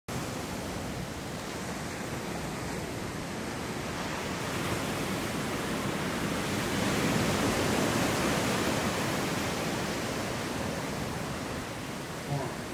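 Ocean surf washing onto a beach and against a breakwater: a steady rush of noise that swells in the middle and then eases.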